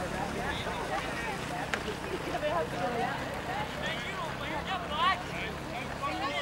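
Shouts and calls of young rugby players and spectators across the pitch, many voices overlapping with no clear words, and a louder rising call about five seconds in. A steady low hum runs underneath.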